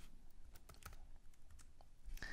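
Faint computer keyboard keystrokes: a handful of scattered, irregular clicks.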